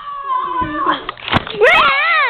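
A child's high-pitched wailing cry: a long held note, then a loud rising-and-falling squeal in the second half, with a sharp knock partway through.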